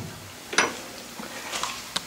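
A few light metal clicks and knocks, about a second apart, as a small vise clamped to angle iron is settled in the jaws of a cast-iron bench vise.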